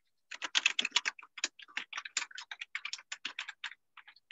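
Typing on a computer keyboard: a quick, irregular run of key clicks that starts just after the beginning and stops shortly before the end.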